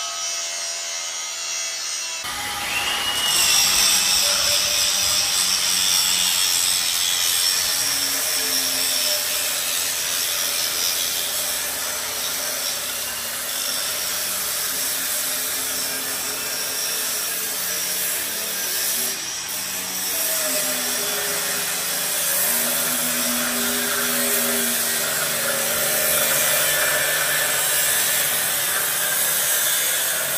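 Large angle grinder grinding down tough weld on a tank's steel hull armour. The disc runs steadily against the steel with a continuous grinding hiss, a little louder from about two seconds in.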